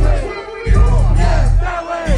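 Live hip hop played loud through a festival PA, with heavy booming bass and a crowd shouting along. The bass drops out for a moment about half a second in, then comes back.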